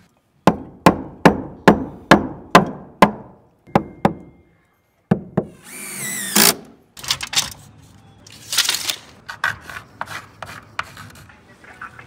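A hammer strikes wood about eight times in a steady rhythm, roughly two blows a second, as wooden blocking is knocked into the soffit framing. After a short break a cordless drill runs briefly with a rising whine, and there are further short bursts of tool noise.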